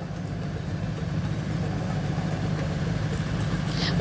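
Low, steady rumble of a motor vehicle engine running on the street, growing slightly louder toward the end.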